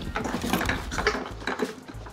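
Rapid clicking, rattling and scraping from inside a small wooden box, the sound given for a chinchilla gnawing out clarinet reeds.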